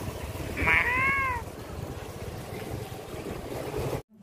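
A cat meowing once, a single rising-then-falling call about a second in.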